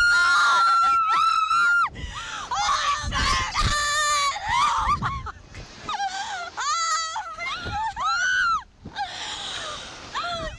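Two women screaming on a slingshot thrill ride in mid-flight: one long high scream held for about two seconds, then a string of shorter screams that rise and fall in pitch. Wind rushes on the microphone in the middle of it.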